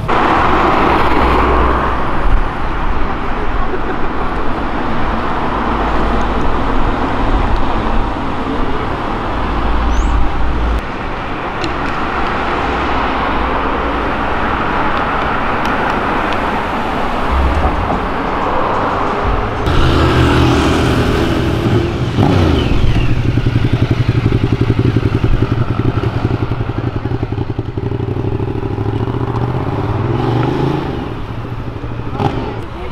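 Road traffic: cars driving past with engine and tyre noise. From about two-thirds of the way in, a motorcycle engine runs close by with a steady low beat, its pitch edging up near the end as it pulls off.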